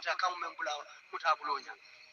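Speech: a voice talking, with short pauses.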